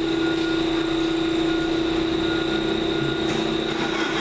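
Steady mechanical drone with a constant low hum and a fainter, higher steady whine, holding level throughout.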